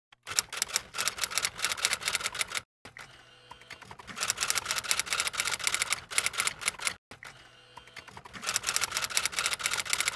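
Typing sound effect: rapid keystroke clicks in three runs of a couple of seconds each, with short pauses between.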